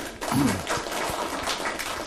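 Audience applauding: a dense, steady patter of many hands clapping, with a short vocal sound about half a second in.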